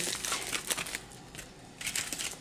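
Plastic packaging crinkling and rustling as it is handled, in scattered bursts: busier at first, quieter in the middle, picking up again near the end.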